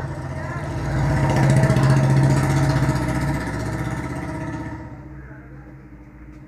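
A motor vehicle's engine running past, growing louder over the first couple of seconds and then fading away about five seconds in.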